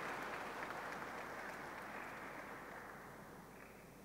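An audience applauding, the clapping dying away steadily until it has almost stopped near the end.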